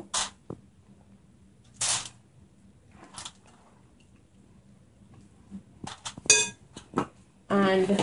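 Aluminium foil crinkling in short, separate bursts as raw fish steaks are set down on it by hand, with a quick cluster of sharper rustles and clicks near the end.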